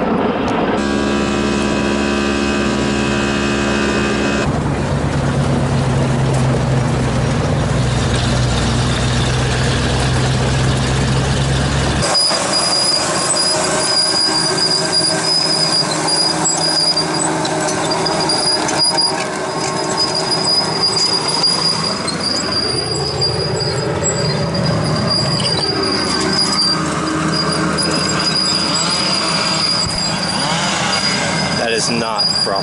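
Tracked grapple skidder at work: its diesel engine runs under a high, steady squeal and gliding squeals from its steel tracks as it drags a log. For the first twelve seconds or so there is instead a steady heavy engine drone with several held tones, which changes abruptly.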